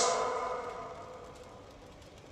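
The echo of a man's spoken voice dying away over about a second and a half after the line ends, leaving a faint steady tone that fades to near quiet.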